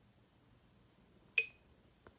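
Near-quiet room tone, broken about one and a half seconds in by a single short click with a brief high ring.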